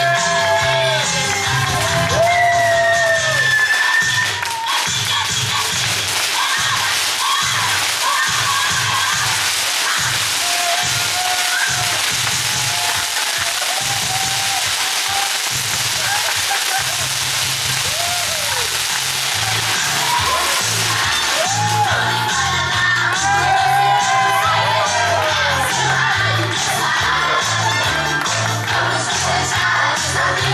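Music with a steady bass beat and singing plays over a cheering crowd. For much of the middle, a ground firework fountain adds a dense hissing spray that dies away about two-thirds of the way through.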